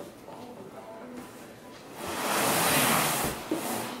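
A golf bag being pulled up out of a tall cardboard box: a scraping, rustling slide of the bag against the cardboard that starts about halfway through and lasts nearly two seconds.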